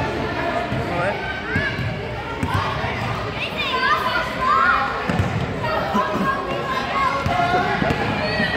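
A basketball bouncing several times on a hardwood gym floor, among many children's and adults' voices calling out and chattering, echoing in a large gym.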